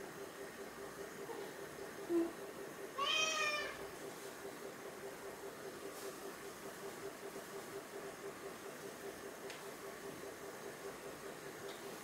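A domestic cat gives one short meow about three seconds in, just after a brief faint sound; otherwise only a faint steady background hum.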